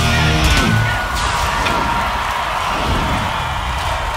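Hard rock music: a full-band passage with heavy bass stops about a second in, leaving a high ringing wash with a faint held tone that carries on.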